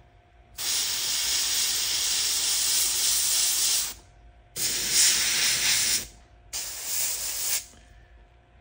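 Airbrush spraying paint in three hissing bursts: one long burst of about three seconds, then two shorter ones of about a second each.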